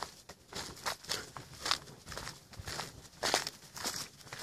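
Footsteps through dry grass and dead leaves, a short rustling crunch with each step at an even walking pace.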